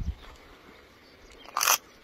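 A marmot biting into a pale slice of food held out to it: one short crunch about a second and a half in, against a quiet background.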